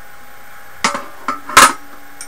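Aluminium rectangular tubing of a robot drive frame being handled and set down, making a few metallic clanks. The loudest comes about a second and a half in and rings briefly.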